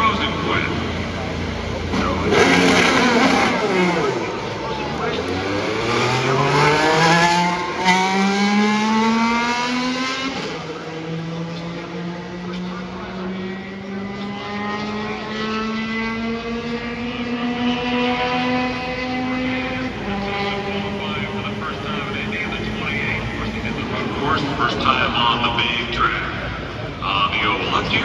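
An IndyCar's twin-turbo V6 accelerating away hard, its note climbing steadily, stepping down at a gear change about ten seconds in and climbing slowly again as the car runs at speed. About twenty seconds in the pitch drops and the note carries on fainter.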